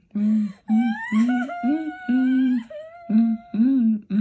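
Recorded woman-crying sound effect played through laptop speakers: a string of wavering wails and sobs, each under a second long, some sliding up or down in pitch, with short breaks between them.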